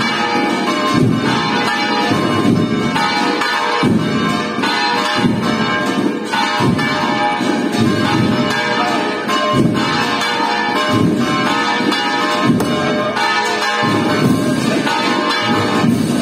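Church bells pealing continuously, with many overlapping ringing strokes.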